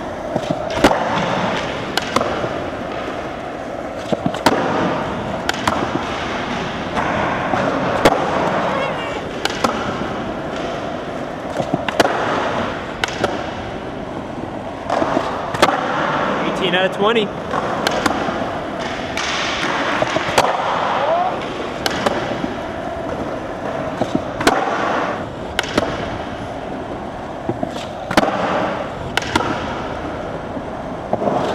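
Skateboard wheels rolling on smooth concrete, broken again and again by the sharp pop of the board and the slap of landings as the skater does nose manuals into nollie flips, one attempt after another.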